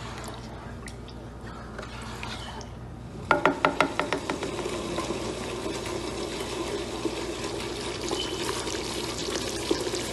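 Thick tomato stew with chicken broth simmering in a pot, bubbling steadily. About three seconds in, a quick run of six or so sharp knocks, after which the bubbling becomes denser and more even.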